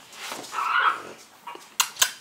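A three-week-old French Bulldog puppy gives one short whimper about half a second in. A couple of sharp clicks follow near the end.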